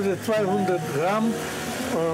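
Untranscribed speech, voices talking at an outdoor market stall, over a steady low background hum.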